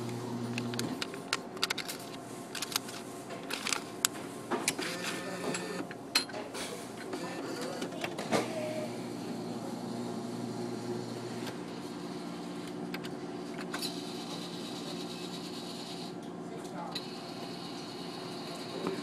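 Claw crane machine running: a steady motor hum with clicks and clatters through the first half, the hum cutting off about two-thirds of the way through.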